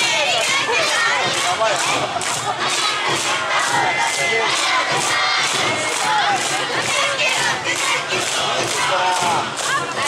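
Awa Odori dance troupe and its accompanying band: many voices shouting chant calls over a steady percussion beat of about two strokes a second, with the noise of the street crowd.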